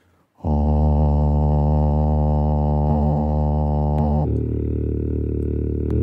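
A man's low, steady vocal drone sung into a microphone and recorded on a loop station, starting about half a second in. About four seconds in its tone changes and grows duller.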